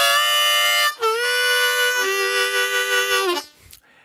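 Richter-tuned diatonic harmonica playing its chords and double stops. One held chord lasts about a second, then after a brief break a longer one follows, its notes shifting partway through. It stops shortly before the end.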